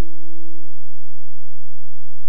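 A single steady pure tone from the soundtrack, fading away a little over halfway through, over a low steady hum.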